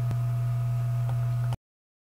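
Steady low electrical hum with faint higher whining tones, cutting off abruptly about one and a half seconds in.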